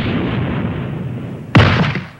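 Sound effect of a judo throw landing: a rushing noise that thins out, then about one and a half seconds in a single heavy boom as the thrown body slams onto the mat, dying away quickly.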